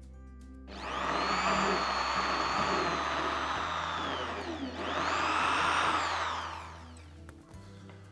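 Dexter electric drill with a small wood bit spinning up about a second in and boring into a block of wood. Its motor whine dips briefly past the middle, rises again, then winds down near the end. Soft background music underneath.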